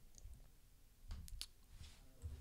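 Three quick, faint computer mouse clicks about a second in.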